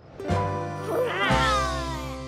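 A cartoon character's high, wavering cry that slides down in pitch, over children's cartoon music, after a sudden hit about a quarter of a second in.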